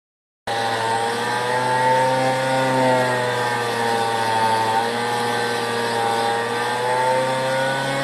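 Handheld rotary tool with a felt buffing bit running steadily while polishing a chrome humbucker pickup cover, a motor whine whose pitch wavers slightly. It starts about half a second in.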